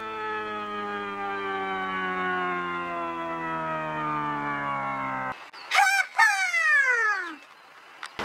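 A sustained electronic music tone with many overtones slides slowly downward in pitch and cuts off suddenly about five seconds in. It is followed by a two-part animal-like call: a short wavering note, then a long cry falling steeply in pitch.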